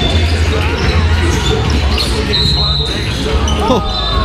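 A basketball being dribbled on a sports hall floor during a 3x3 streetball game, with voices around the court and a few short high squeaks near the end.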